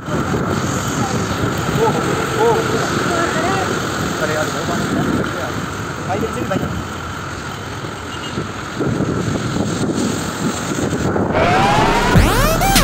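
Wind rushing over the microphone in a steady roar, with faint voices in the background in the first few seconds. Electronic music comes in just before the end.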